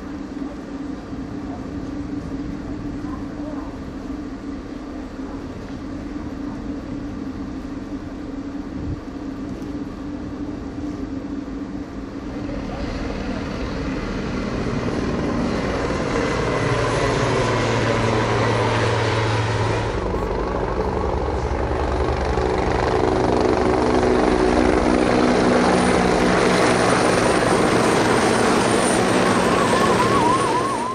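Steady engine noise that grows louder from about halfway through, with a faint high whine rising slightly in pitch near the end.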